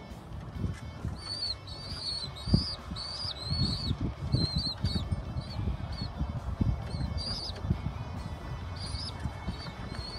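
Birds peeping: short, high rising-and-falling chirps repeated in quick runs, over low rustling and knocking.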